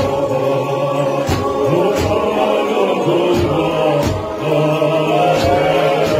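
Voices singing a gospel hymn in harmony, held notes gliding from one pitch to the next, over a steady low tone, with sharp percussive hits every second or so.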